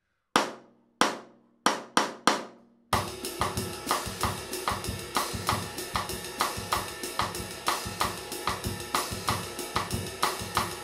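Drum kit playing a fast bossa nova / baião groove: cross-stick clicks on the snare rim over a ride cymbal pattern and bass drum, with the left-foot hi-hat splashing on the second 'and'. A few spaced single strokes come first, and the full groove starts about three seconds in and repeats evenly.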